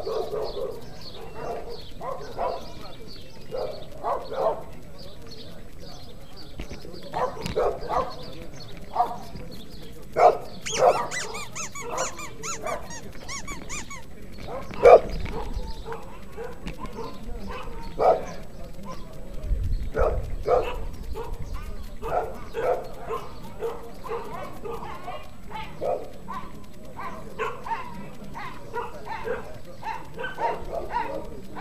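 A dog barking repeatedly in short, irregular bursts throughout, with people's voices talking in the background.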